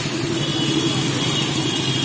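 Several motorcycle and scooter engines running steadily as a group of bikes rides along together. A thin steady high tone joins in about half a second in.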